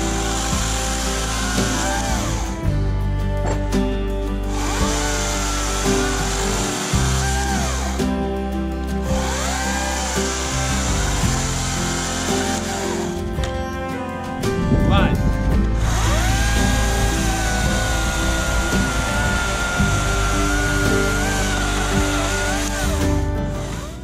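Oregon CS300 battery-powered chainsaw running and cutting through a log in four runs of a few seconds each, with short pauses between. Its electric motor and chain whine over background music.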